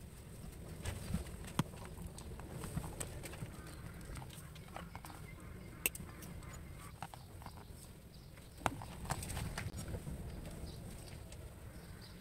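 Scattered small clicks and taps of a metal F-connector and coaxial cable being handled and screwed together, over a low steady rumble, with the sharpest clicks a little after one second, near six seconds and near nine seconds.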